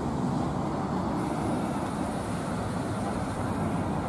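Steady road traffic noise, an even rumble of passing cars.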